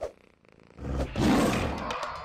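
A tiger's roar sound effect that starts about three-quarters of a second in, swells, then tails off near the end. A brief sharp sound comes at the very start.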